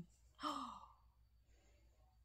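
A short, breathy vocal 'ohh' with a falling pitch, about half a second in: a sigh-like gasp of wonder as the warmer's light comes on.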